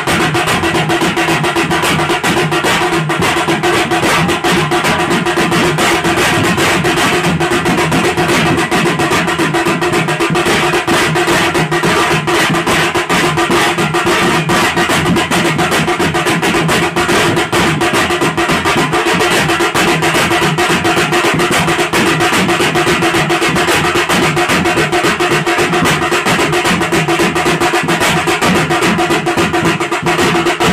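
Group of folk drums, among them a large barrel drum, played together by hand in a fast, unbroken rhythm at a steady loud level.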